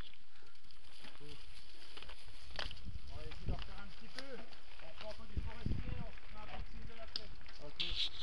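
Mountain bikes riding over a dirt forest trail: low rumble with wind on the helmet-mounted microphone growing from about two seconds in, with scattered clicks and rattles from the bikes. Indistinct voices talk over it.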